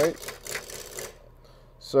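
A lathe turning tool cutting a spinning, out-of-round natural-edge maple burl: a rapid ticking rasp as the edge meets wood and then air on each turn, an interrupted cut that stops about a second in.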